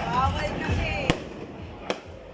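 Two sharp firecracker bangs, one about a second in and a louder-sounding... no: the first, about a second in, is the louder; the second comes just before the end.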